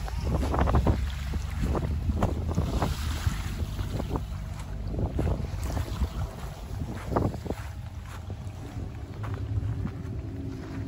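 Wind buffeting the microphone: a steady low rumble broken by irregular gusty knocks.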